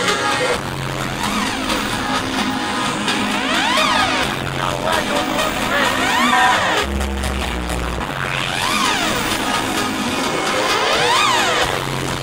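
Live electronic dance music played loud through a venue PA, with synth tones sweeping up and down in pitch over and over, and a heavy bass note dropping in about seven seconds in for around a second.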